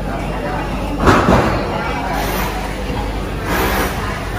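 Busy restaurant-kitchen din with background voices, broken by a sudden loud clatter about a second in and a smaller one near the end.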